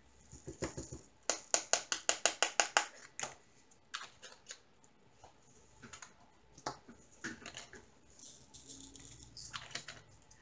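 Diamond painting drills rattling in a plastic drill tray as it is handled and filled. A quick run of about a dozen sharp clicks comes early on, then scattered lighter clicks.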